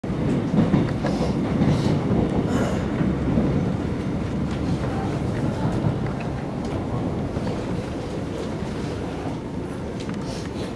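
Running noise inside a Korail 321000-series electric multiple unit: a steady rumble of wheels on the rails with a few faint clicks. The noise eases off slightly over the last few seconds.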